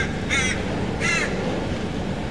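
A crow cawing, three caws within the first second and a half, over steady background noise.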